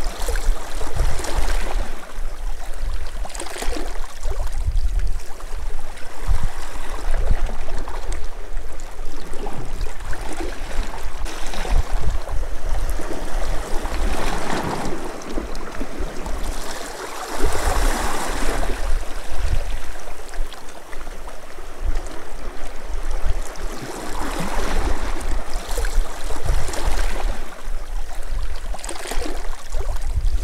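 Sea water washing and lapping against shore rocks, swelling and falling back every few seconds, over a continuous low rumble.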